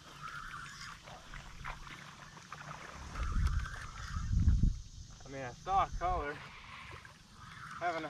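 Low rumble against the microphone for about two seconds midway, then a brief faint voice.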